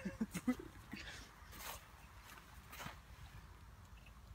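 A husky sniffing faintly, three short sniffs spread over a few seconds.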